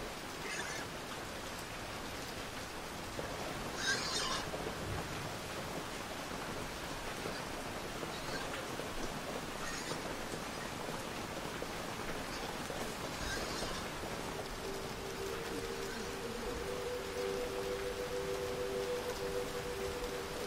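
Steady rain falling, with a few brief sharper spatters. From about three quarters of the way in, a steady two-note hum joins it.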